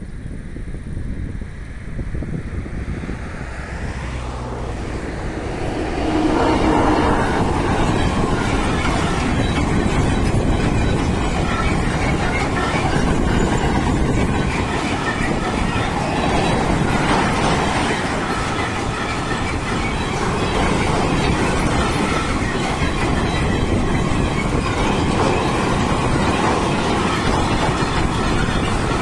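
Freight train of empty double-deck car-carrier wagons passing over a level crossing, wheels running on the rails. The noise builds over the first six seconds as the train arrives, then stays loud and steady as the wagons roll by.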